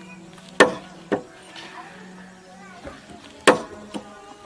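An axe chopping into a wooden pole: two sharp blows half a second apart, then a third about two seconds later, followed by a lighter knock near the end.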